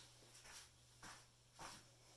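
Near silence broken by a few faint soft rustles and small snaps of gloves being peeled off slowly and carefully.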